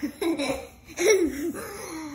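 A young girl laughing in two bouts, the second, louder one starting about a second in.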